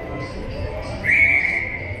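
A high, steady whistle tone starting sharply about halfway through and held for just under a second, over the murmur of a busy pedestrian street crowd.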